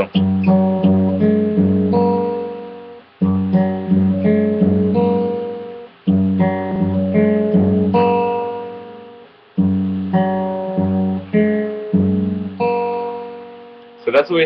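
Fingerpicked acoustic guitar: the same short phrase of several plucked notes played over and over, about five times, each phrase's notes ringing together and fading before the next begins. The thumb and middle finger alternate on the strings.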